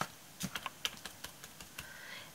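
A sponge dabbing paint onto a glass bottle covered in raised embellishments: a string of light, irregular taps and clicks.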